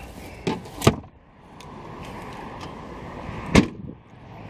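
A 2009 Honda Accord's trunk lid slammed shut with a single loud thump about three and a half seconds in. Before it, two lighter knocks about half a second and a second in, as the trunk floor cover is set down over the spare, then a faint steady background noise.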